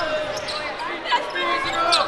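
Several young voices talking and laughing over one another in a gym, with a single sharp knock about a second in.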